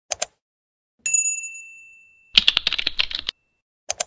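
Computer interface sound effects: a quick double mouse click, then a bright bell-like notification ding that rings out and fades over about a second. A second later comes a rapid burst of keyboard typing lasting about a second, and a final click near the end.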